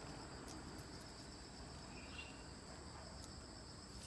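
Faint, steady, high-pitched trilling of crickets. A brief faint chirp comes about two seconds in.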